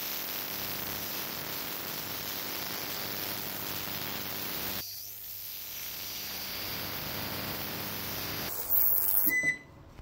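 Vevor digital ultrasonic cleaner running: a steady high hiss with a buzz as it works a bath holding cups of vinegar and CLR-type rust remover, with rusty pliers and a nut soaking in them. The sound dips briefly about halfway, and a short louder burst comes near the end.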